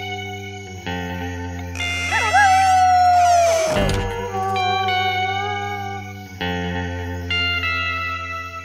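Cartoon background music of sustained chords over a steady bass, with a slide-guitar-like line. About two seconds in, a long wavering howl rises, holds and then falls away at around four seconds: the cartoon wolf howling at night.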